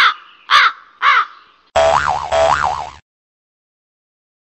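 Three harsh crow-like caws about half a second apart, then a wobbling cartoon tone that rises and falls twice and cuts off suddenly: comic sound effects laid over the picture.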